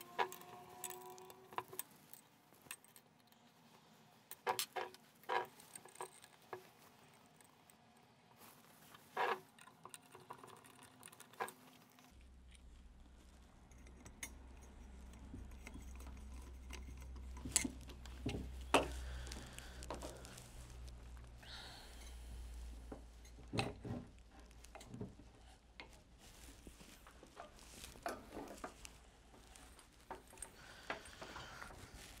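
Scattered metal clicks and clinks of a stainless steel submersible helical pump being reassembled by hand, with a screwdriver working the screws of its intake screen. A low steady hum comes in about twelve seconds in.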